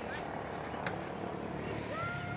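Indistinct voices over a steady low hum, with a single sharp click just under a second in.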